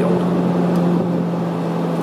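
Ferrari 430 Scuderia Spider 16M's 4.3-litre V8 running steadily at low revs as the car creeps along, its pitch easing down slightly in the second half.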